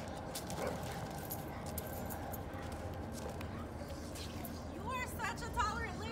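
Two dogs playing, with short scuffling clicks, then one of them giving high, wavering whines and yips about five seconds in.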